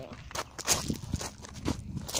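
Footsteps on loose gravel and rocks: a handful of uneven crunching steps.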